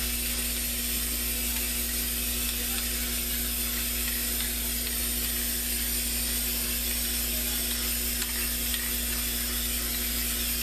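Aerosol spray-paint can hissing in one long, steady spray as black paint is laid over a canvas, with a steady low hum underneath.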